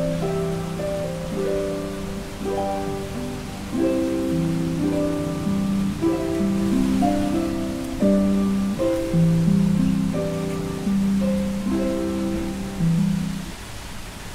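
Harp music: a slow melody of plucked notes over low bass notes, dropping away near the end.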